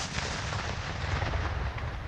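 Rolling rumble of a large explosion, a controlled detonation of a landmine or unexploded ordnance. The blast itself has just gone off, and the rumble fades slowly.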